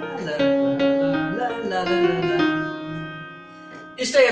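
Electronic keyboard playing a melody in E flat minor over held chords, the notes dying away near the end.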